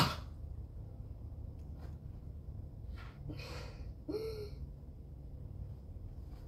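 A sharp knock, then a low steady hum with a short swish and a brief gasp-like sound from a person about four seconds in.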